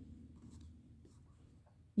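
Faint sounds of a pen and hand moving over a sheet of paper, fading quieter towards the end.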